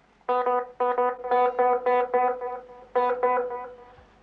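Plucked guitar notes fed through a single-repeat tape echo with the repeat sped up, so each note is closely followed by its echo. They come in a quick, even run of pitched plucks, starting about a third of a second in.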